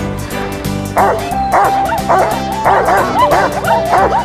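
A dog barking and yipping in quick short bursts over steady background music, starting about a second in.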